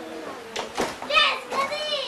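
A young child's high-pitched voice calling out about a second in, after a few sharp clicks.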